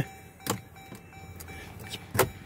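A single sharp click about half a second in, over a faint low steady hum.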